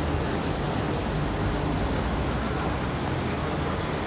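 Steady rushing background noise with a low rumble, no distinct events.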